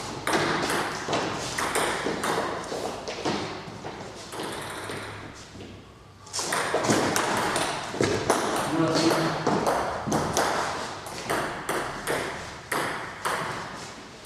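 Table tennis ball clicking off the bats and the table in quick rallies. The clicks thin out toward about six seconds in, then a fast new rally runs on to the end.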